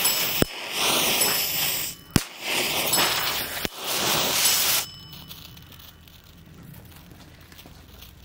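Standard e-match igniters firing in turn on green visco safety fuse: three sharp pops about a second and a half apart, each followed by roughly a second of hissing as the visco fuse lights and burns, with the last hiss dying away about five seconds in.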